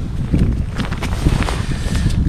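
Wind buffeting the microphone: a loud, rumbling low rush, with a few brief crackles in the middle.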